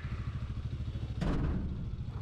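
Motorcycle engine idling with a steady, rapid low pulse, with a brief rush of noise a little over a second in.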